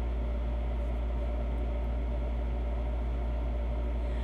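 A steady low mechanical hum that runs on unchanged, with a faint even whir above it.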